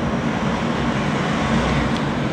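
A steady low rumble with a faint hum underneath, even throughout, with no speech over it.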